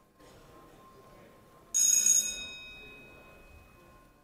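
A single bell-like chime about two seconds in, struck once and ringing on with several high tones that fade over about a second and a half, over the low murmur of a large chamber.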